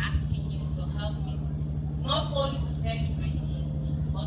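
A woman speaking into a microphone, her voice carried over a sound system, with a steady low hum underneath.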